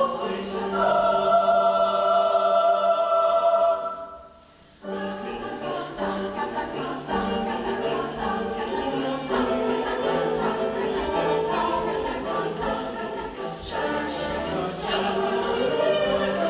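Youth choir singing an Ecuadorian folk song: a held chord that dies away about four seconds in, then after a brief pause the singing resumes in shorter, rhythmic notes.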